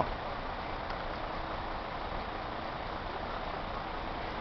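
Steady outdoor background noise: an even, low rumble and hiss with no distinct events.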